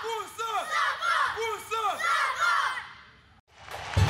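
A group of boys shouting together in unison, a rhythmic chant of short rising-and-falling calls about two a second. It dies away about three seconds in.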